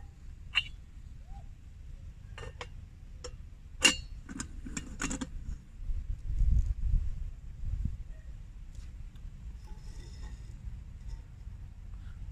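A series of sharp metal clinks and knocks from the lid and tin cup of an antique mess kit being handled on a small spirit stove, the loudest about four seconds in. A low rumble follows about six seconds in.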